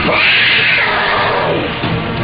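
Dramatic film background score with an animal cry over it, a bear's snarl or roar sound effect that drops steeply in pitch right at the start.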